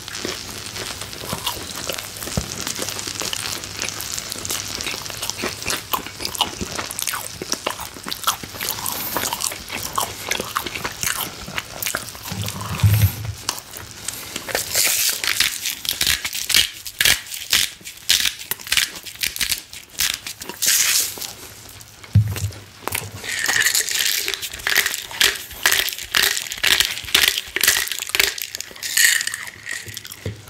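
Steak sizzling and crackling on a hot stone grill. From about halfway, a hand-twisted spice grinder grinds over it in rapid crunching clicks, with a couple of dull bumps as it is handled.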